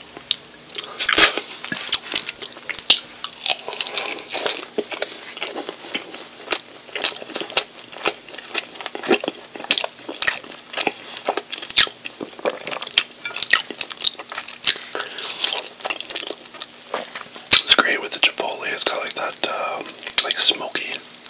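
Close-miked chewing and biting of saucy chicken wings, with many sharp, irregular wet mouth clicks and smacks.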